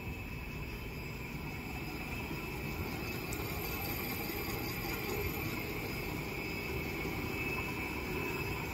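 Automatic bottle capping machine and its conveyors running, a steady mechanical hum with a thin, steady high whine.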